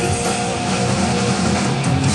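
Rock band playing live, with distorted electric guitars holding sustained notes over bass and drums, heard loud and full on an amateur audience recording.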